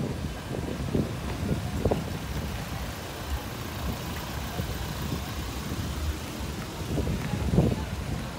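A pickup truck driving past close by on the street, with a low, fluttering rumble of wind on the microphone.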